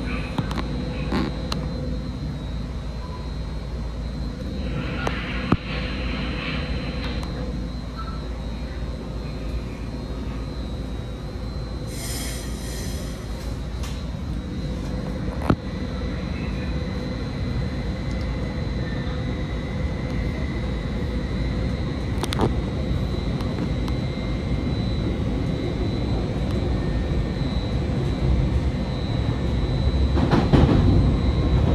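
Caltrain commuter train heard from inside the passenger car as it gets under way: a steady low rumble that grows gradually louder, with faint steady whine tones, a few sharp clicks and a short hiss about twelve seconds in.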